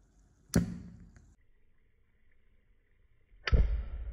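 Two sharp pops from a long lighter igniting acetylene gas over a beaker of calcium carbide reacting with water: a short one about half a second in, then a louder, deeper one near the end as the gas catches fire in the beaker and trails off.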